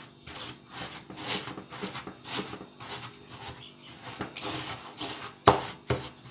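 Bare hands rubbing and squeezing margarine into dry crushed biscuit crumbs in a bowl: a gritty rustling in irregular strokes. A single sharp knock, the loudest sound, comes about five and a half seconds in.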